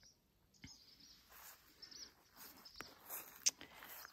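Faint bird chirps: a few short, high calls scattered through, with a brief sharp click about three and a half seconds in.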